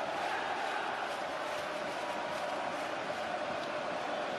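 Football stadium crowd cheering and singing, a steady dense wash of many voices.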